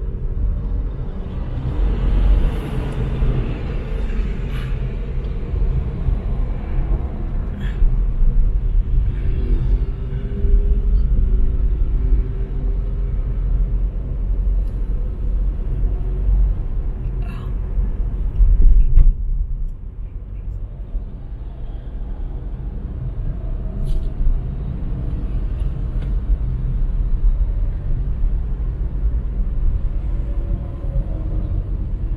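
Road and engine noise heard from inside a moving car's cabin: a steady low rumble. It swells to its loudest about two-thirds of the way through, then settles a little quieter.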